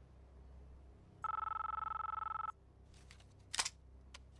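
A mobile phone rings once with an electronic trilling ring lasting about a second and a half. A sharp click follows about three and a half seconds in as it is answered.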